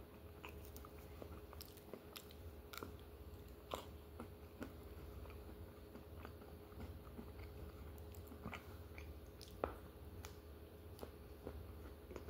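A person chewing ice cream and cone close to the microphone: faint, scattered mouth clicks, a couple of them sharper, over a low steady hum.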